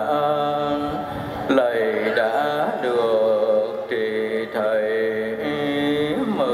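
A man chanting a liturgical text, with long held notes and slides between pitches in phrases of about a second each.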